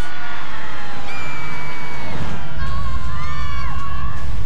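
Log flume riders screaming and whooping as the boat plunges down the big drop, their long high cries held for a second or more. A deep rumble comes in about halfway through.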